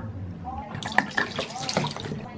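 Mouthwash poured from a plastic bottle into a bathroom sink, splashing on the basin and running down the drain. The pouring starts about a second in.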